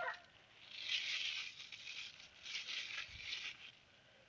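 A rooster's crow cutting off right at the start, then two short bouts of soft rustling as cucumber leaves brush against the phone moving through the vines.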